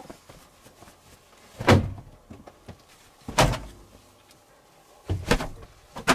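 A kitchen towel being whipped at flies: three sharp whacks, each with a dull thud, roughly every second and a half to two seconds.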